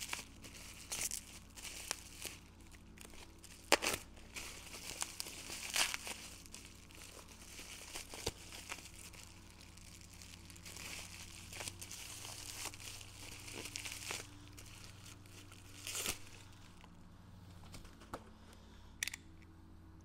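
Plastic packaging crinkling and tearing as it is cut and pulled off a small wheel part, with irregular crackles and a sharp click about four seconds in. It dies down over the last few seconds.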